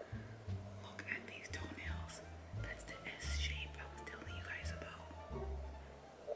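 Hushed whispering from about a second in to about five seconds in, over background music carried by a line of low bass notes.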